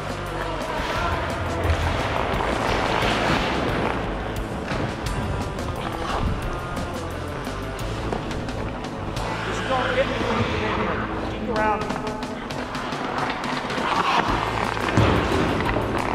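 Background music, with a voice heard briefly about ten seconds in.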